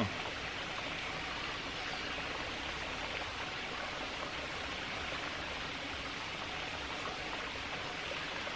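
Steady, even rushing noise of outdoor forest ambience, with no distinct events.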